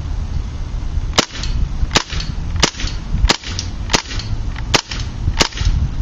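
KWA MP7 gas blowback airsoft gun, run on propane, firing single shots on semi-automatic: seven sharp cracks about two thirds of a second apart.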